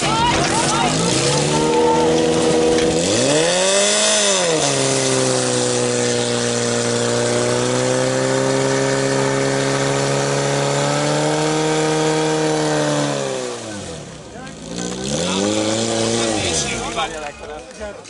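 Portable fire-sport pump engine revving up to full speed and running steadily and loudly while pumping water, then dropping off, revving once more and shutting down near the end.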